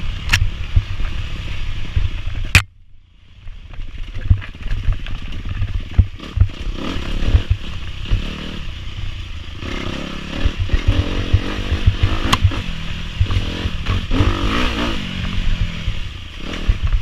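Dirt bike engine running hard along a rough woods trail, its revs rising and falling, over constant clattering knocks from the bumps and wind on the helmet camera. About two and a half seconds in, a sharp click is followed by a brief drop in sound for about a second.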